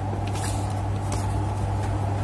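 Steady low electrical hum from the bench setup, with a few faint clicks.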